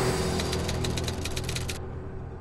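Title-sequence sound effect: a low steady drone under a rapid run of glitchy clicks, about a dozen a second, that cuts off suddenly near the end, leaving the drone to fade.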